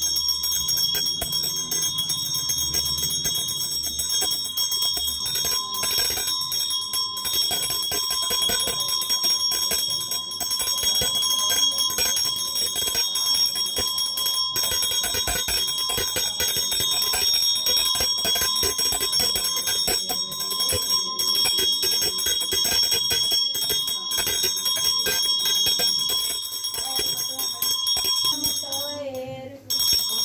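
Small brass puja hand bell rung rapidly and without pause, a steady bright ringing, as during an aarti; it breaks off briefly near the end.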